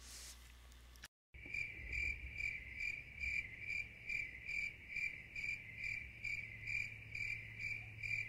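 A cricket chirping steadily, about two to three evenly spaced chirps a second, starting about a second in after a brief moment of silence, over a faint low hum.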